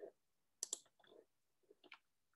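A few faint, sharp clicks at a computer, two in quick succession under a second in and another near the end, over near silence.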